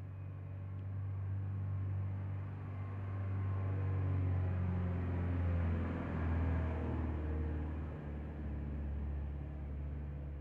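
A motor vehicle's engine running close by: a low, steady hum that grows louder through the middle, drops in pitch about six seconds in, and fades near the end.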